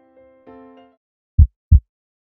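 Soft electric-piano notes fade out. About a second and a half in, two loud, low heartbeat thumps follow in quick succession, one lub-dub of a heartbeat sound effect.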